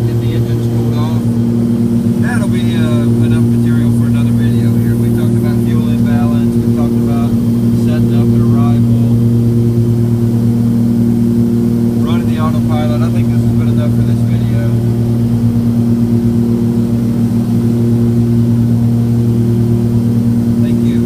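Cabin drone of a Cessna 340's twin piston engines and propellers in steady flight, a constant low hum with evenly spaced tones and no change in pitch.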